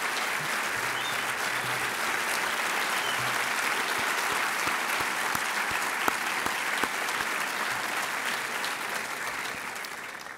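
Audience applauding, a steady dense clapping that dies away near the end.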